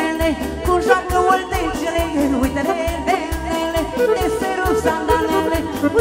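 Live band playing fast Romanian folk dance music for a hora, a saxophone-led melody full of quick ornaments and bends over a steady beat.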